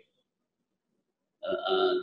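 Dead silence for over a second, then a man's voice comes back near the end with a held, drawn-out vowel sound leading into his next word.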